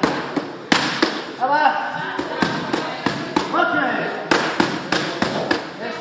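Boxing gloves punching focus mitts: sharp smacks in quick runs of two to four, more than a dozen in all.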